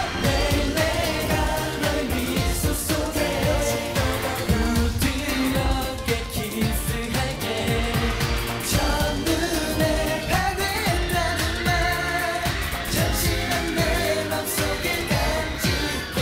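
K-pop dance song: a male voice singing over a pop backing track with a steady beat.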